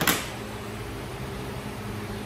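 Steady hum of an electric fan running, with a brief rush of noise right at the start.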